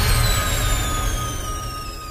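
Electronic outro music for an end-screen animation: a deep, bass-heavy hit fading away, with thin high tones slowly sliding down in pitch over a steady held tone.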